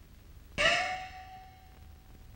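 One strike on a small gong from a Chinese opera percussion band, about half a second in. Its tone bends slightly upward at first, then rings on and fades.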